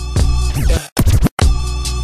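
Slowed-down hip hop beat with regular drum hits. About half a second in the music sweeps down in pitch, cuts out twice in quick succession, and the beat comes back in: a DJ chop edit in the chopped-and-screwed mix.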